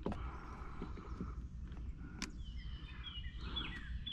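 Quiet outdoor ambience with a sharp click about two seconds in, then a few short, falling bird chirps near the end.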